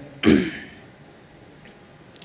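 A man coughs once to clear his throat, a short burst about a quarter second in, followed by quiet room tone.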